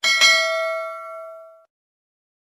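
A bell-like chime struck twice in quick succession, ringing with several clear tones that fade over about a second and a half and then cut off abruptly.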